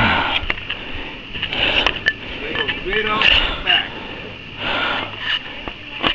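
A man breathing hard close to the microphone, with a few loud breathy exhales about a second or so apart, and light clicks in between.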